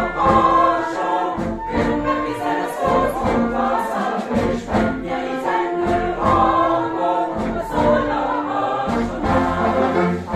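A choir singing together with a wind band, in continuous held notes.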